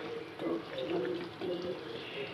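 Chicken curry being stirred with a wooden spatula in a nonstick frying pan, the spatula moving through the thick sauce and against the pan.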